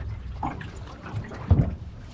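Water lapping against a small flat-bottom boat's hull, with a low thump about one and a half seconds in.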